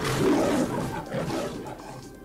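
A beast-like roar sound effect in an intro: it starts abruptly, is loudest in the first half-second, then fades away over the next second or so.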